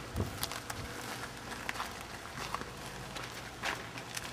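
Footsteps of several people walking on dry dirt and gravel: light scuffs and crunches at uneven intervals.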